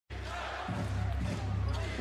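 Basketball arena ambience during an NBA game: a steady low hum with faint distant voices and court sounds.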